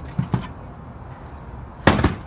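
A metal-framed domed skylight being handled: two light knocks as it comes off its wooden curb, then a loud clunk near the end as it is set down on the shingled roof deck.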